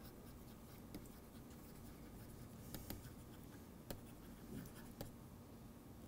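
Faint scratching and tapping of a stylus writing on a tablet screen, with a few sharper ticks as the pen touches down between strokes.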